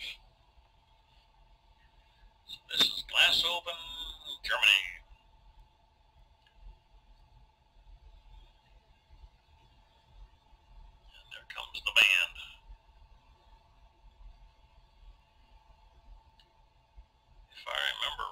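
A man's voice in two brief, unclear stretches, about three seconds in and again near twelve seconds, on a home tape recording with a steady faint hum and otherwise near quiet.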